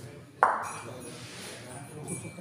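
A bocce ball lands on the court with a single sharp knock about half a second in, followed by a ringing tail that fades over about a second as it rolls away.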